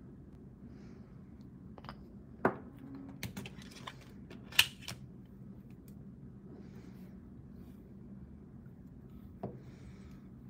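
Quiet handling of nail stamping tools on a metal stamping plate: soft scrapes and small taps as polish is put on and a silicone stamper is pressed onto the plate, with two sharper clicks about two and a half and four and a half seconds in.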